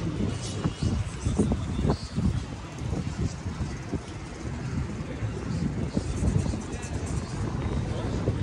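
Wind buffeting the microphone in an uneven, gusty low rumble, with faint voices of people nearby.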